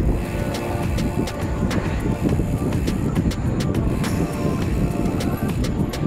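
Wind rumbling on the microphone of a camera riding along on a moving bicycle, under background music with a light recurring beat.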